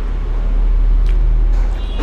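A steady, deep low rumble with a faint click about a second in.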